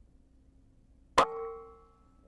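A single shot from a Benjamin Marauder PCP air rifle about a second in: one sharp crack followed by a short metallic ring that dies away within about a second.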